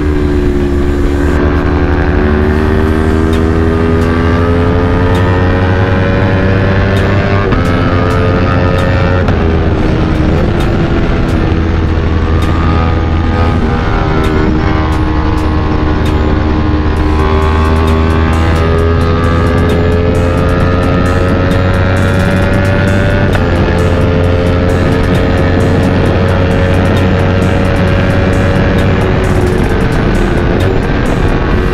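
Yamaha R3's parallel-twin engine running at speed, its pitch rising slowly under acceleration and dropping or stepping several times as the throttle eases and the gears change, over steady wind rush on the helmet camera.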